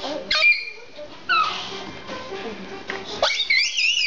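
A toddler squealing with laughter in three high-pitched, wavering bursts: a short one about a third of a second in, another just over a second in, and a longer one near the end. Television music plays faintly underneath.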